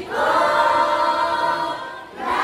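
A group of female voices singing together, holding one long note. There is a short break in the sound at the start and again near the end.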